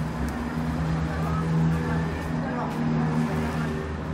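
Steady low machine hum, a pitched drone that swells and eases slightly, with faint voices in the background.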